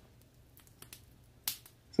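A pause that is nearly silent, broken by a couple of faint ticks and one brief, sharper click about a second and a half in.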